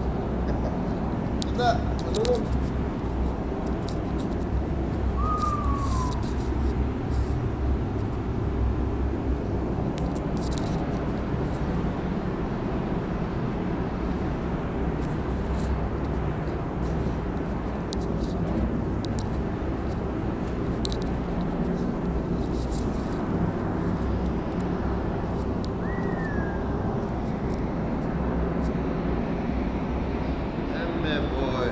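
Steady low rumbling air noise of a spray paint booth's ventilation fans, with a few light clicks.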